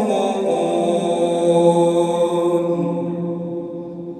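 A man's voice reciting the Quran in melodic tajweed style, drawing out a long sustained note at the end of a verse. The note fades over the second half.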